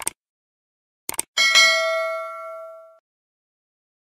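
Subscribe-button animation sound effect: a short click, then a quick double click about a second in, followed by a notification-bell ding that rings out and fades over about a second and a half.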